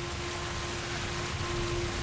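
Steady rain falling, with a low, held note of film-score music beneath it; a second, higher held note comes in about halfway through.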